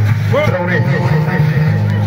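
A voice calls out loudly for about a second, over music whose steady bass carries on underneath.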